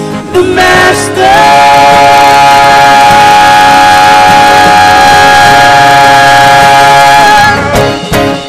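Live band music with keyboard, drums, acoustic guitar and a woman's voice: after a brief lead-in, the band holds one long chord for about six seconds, which cuts off near the end.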